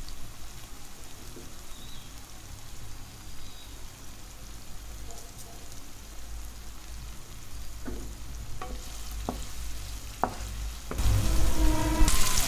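Chopped tomatoes and onions frying in oil in a kadai, a steady sizzle with a few light clicks near the end. The sizzle turns suddenly louder about a second before the end.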